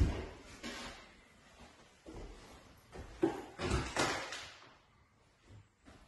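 Footsteps and knocks on bare wooden floorboards: a sharp knock at the start, then irregular thuds, and a longer scuffing scrape about three and a half seconds in.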